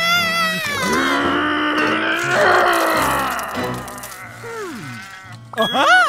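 Cartoon character voice straining with drawn-out grunts and groans, the effort of trying to twist open a stuck jar lid, over background music. A quick rising sound comes near the end.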